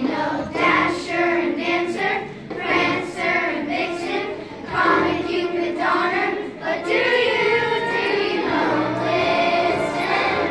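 Children's choir of fifth graders singing a Christmas song together, in sung phrases with short breaks between them.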